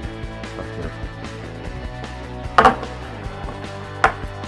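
Handling of a plastic Mash'ems blind capsule on a table: one loud sharp knock about two and a half seconds in, and another at the very end as the capsule is set down on the tabletop. Steady background music plays underneath.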